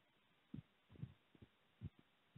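Near silence, broken by a few faint low thumps about half a second apart.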